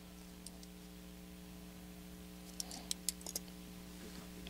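Faint steady electrical hum of an open commentary microphone, with a handful of small sharp clicks between about two and a half and three and a half seconds in.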